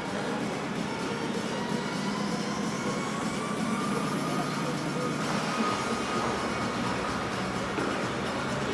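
Faint music through the arena's loudspeakers over a steady rumble of hall noise.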